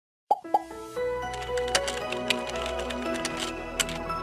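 Intro sound effects and music: two quick plops near the start, then sustained music tones with a few sharp clicks over them.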